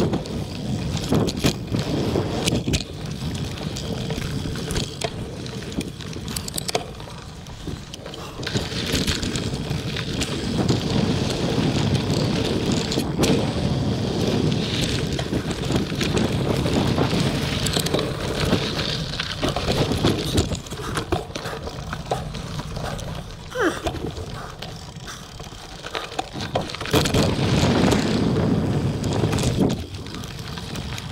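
Mountain bike riding fast on dirt singletrack: wind rushing over the camera microphone and knobby tyres rolling on dirt, with frequent clicks and rattles from the bike over bumps. The rush swells and fades as speed changes.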